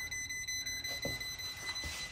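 Non-contact voltage tester beeping as its tip touches the furnace's black power lead: a high-pitched beep pulsing about five times a second, the sign that the lead is live with 110-volt power.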